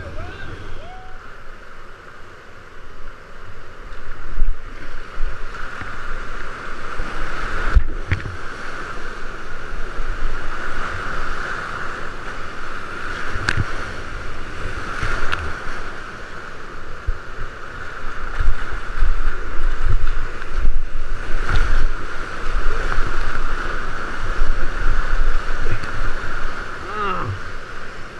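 Whitewater rapids rushing and churning around a kayak, heard from a helmet-mounted camera, with water splashing onto it and irregular low thumps throughout.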